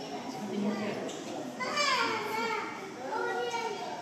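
Visitors' voices, including children's, echoing in a large indoor viewing hall. A child's high voice calls out and falls in pitch about two seconds in, and other voices follow.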